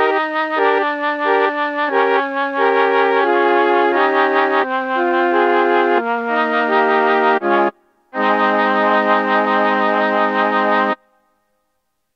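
Korg KingKORG synthesizer playing a slow run of sustained chords on one of its sampled (PCM) patches. Near the end one chord is held for about three seconds and then cuts off suddenly.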